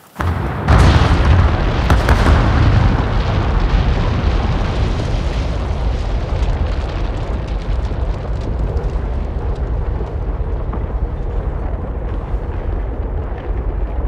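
Demolition charges firing in the explosive demolition of a power station's boiler house and chimney. Several sharp bangs come in the first two seconds, then a long, deep rumble of the structures collapsing that slowly fades.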